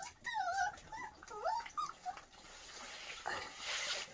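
Puppies whimpering as they eat: several short, high whines that bend up and down in pitch during the first two seconds, then faint clicks and rustling near the end.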